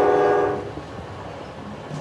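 Train horn holding a long steady note that fades out about half a second in. After it comes the quieter rumble of a train running on the rails.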